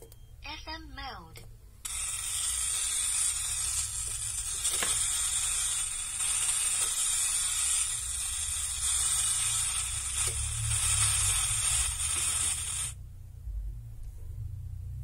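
Small Bluetooth speaker giving a short falling electronic tone, then a loud steady static hiss that starts abruptly about two seconds in and cuts off suddenly near the end.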